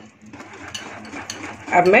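Water poured in a thin stream into thick ragi-flour batter in a glass bowl, a faint steady trickle with a few light clicks as the batter is worked by hand.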